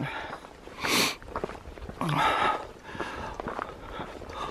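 A hiker's breathing while walking the trail: a sharp breath in about a second in, then a breathy breath out at about two seconds.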